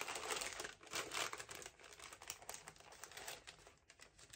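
Gift wrapping crinkling as it is unwrapped by hand, a run of irregular crackles that thins out toward the end.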